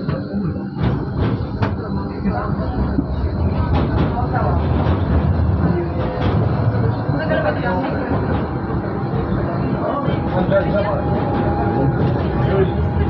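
Moderus Gamma LF 03 AC low-floor tram running on track, heard from inside the driver's cab: a steady rumble of wheels and running gear, with a few sharp clicks in the first two seconds and a faint steady whine coming in near the end.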